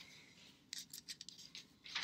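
Bible pages being turned: a run of faint crisp paper crackles from about a third of the way in, ending in a louder rustle at the end.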